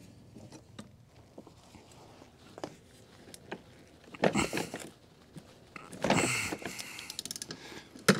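Hand socket wrench working a tight, WD-40-soaked mower-blade center nut loose: scattered small metal clicks, two short scraping rushes about four and six seconds in, and a quick run of clicks near the end.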